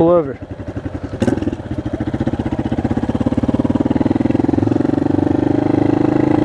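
Motorcycle engine running at low road speed, its evenly pulsing note holding a steady pitch and growing louder over a couple of seconds as throttle is held on.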